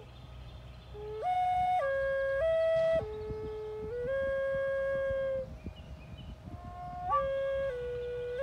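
Native American flute playing a slow melody of long held notes that step up and down. There is a short pause for breath at the start and another a little past halfway.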